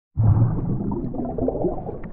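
Intro sound effect: a sudden deep rush of underwater bubbling that slowly fades.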